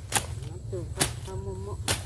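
Brush and vines being slashed with a long-handled blade: three sharp swishing chops, about a second apart.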